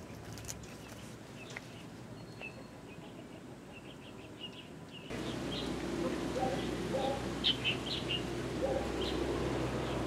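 Wild birds calling: scattered short high chirps, faint at first, then louder and busier from about five seconds in, with lower repeated call notes mixed in.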